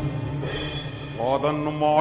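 Stage accompaniment music with a low sustained drone, quieter in the first second. About a second in, a man's voice starts a drawn-out sung line in the style of a chanted verse, rising in pitch.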